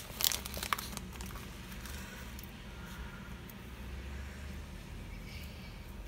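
Parcel packaging crinkling and crackling as a small padded mailer is opened by hand, busiest in the first second, then dying down to faint handling ticks over a low steady hum.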